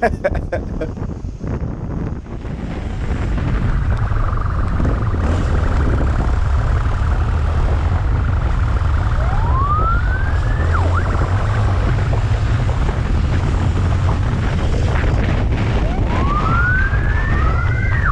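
Police motorcycle siren sounding in traffic, rising in pitch about halfway through and again near the end, over the steady low rumble of motorcycle engine and wind.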